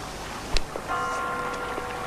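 A sharp click, then about a second in a steady bell-like ringing tone with several overtones that holds to the end, over a faint hiss.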